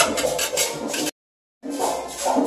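Perico ripiao merengue playing in a house across the street, its güira scraping a fast, even rhythm. The sound cuts out for about half a second just past a second in.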